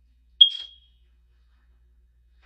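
A single short, high-pitched ping about half a second in that rings briefly and dies away.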